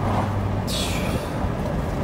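Road and engine noise inside a Toyota car's cabin while driving, a steady low hum under an even rush, with a brief hiss about three-quarters of a second in.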